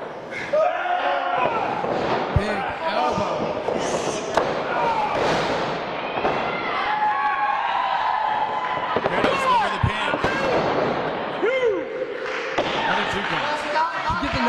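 Voices calling out and talking indistinctly around a wrestling ring. A couple of heavy thuds of wrestlers' bodies hitting the ring mat stand out, one a couple of seconds in and another later on.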